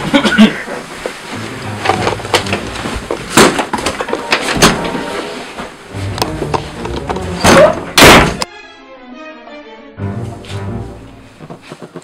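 A run of knocks, thumps and handling noise from people moving and scuffling, over background music, with a loud burst of noise just before eight seconds. The music then plays alone briefly, and more knocks follow near the end.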